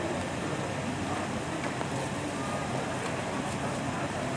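Steady low street rumble, like idling vehicles or traffic, with faint indistinct voices in the background.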